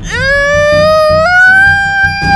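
A boy's long, high-pitched cry of pain, rising a little in pitch and then held, over background music with a steady beat.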